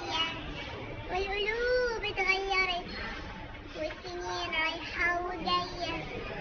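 A woman singing without words being picked out, her voice drawn into long held notes that rise and fall, in several short phrases.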